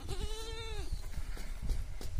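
A goat bleats once, a single wavering call of just under a second at the start.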